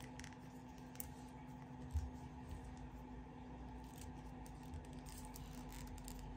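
Faint handling of a leather watch strap and its metal buckle as it is unbuckled and refastened: a few small clicks and a soft knock about two seconds in, over a steady faint hum.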